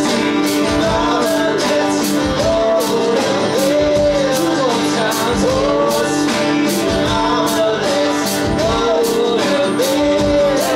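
Live band music from acoustic guitars, electric guitar and drum kit, playing a country-rock song with a steady beat and a melody line bending over the strummed chords.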